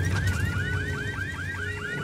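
Car alarm sounding in quick, repeated rising sweeps, about seven a second, over a steady low rumble.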